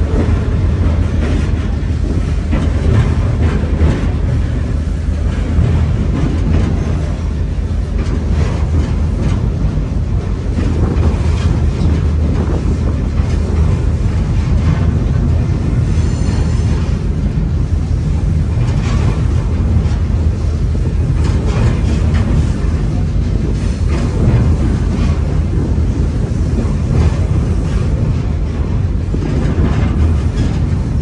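Scenic passenger train rolling along: a steady low rumble of wheels on rail, heard from an open car, with scattered faint clicks from the track and a brief high squeal about halfway through.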